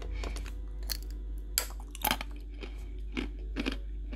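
Biting and chewing a brittle shard of dalgona candy, hardened melted sugar: a few sharp crunches spread through the chewing.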